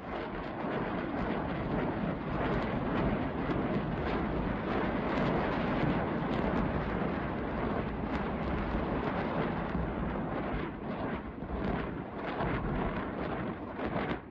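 Distant rocket artillery salvo firing: a continuous roar threaded with many sharp cracks, dropping away abruptly at the end.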